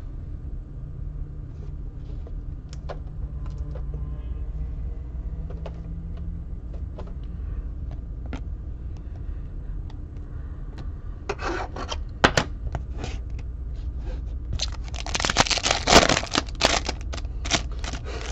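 Trading cards and foil packs being handled, with scattered small clicks and crinkles, then a 2020 Topps Chrome foil card pack being torn open, the loudest sound, a rustling tear lasting about a second and a half near the end.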